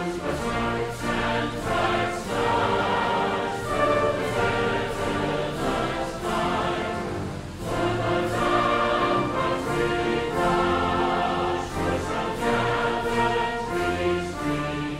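Background choral music: a choir singing sustained chords with accompaniment.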